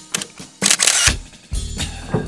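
Camera-shutter sound effect over music: a few light clicks, then a loud shutter burst about half a second in, with low bass notes coming in after it.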